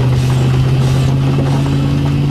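A road vehicle driving at steady speed, heard from inside the cab: an even engine hum with tyre and road noise.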